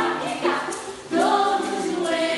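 Several voices singing together in a choir-like song with held notes, easing off briefly about a second in before coming back in full.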